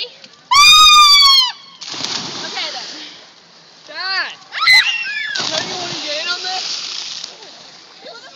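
People jumping off a rock ledge into the sea: a loud high yell about half a second in, then water splashing from about two seconds in. More short shouts follow around four seconds, then a longer stretch of splashing water.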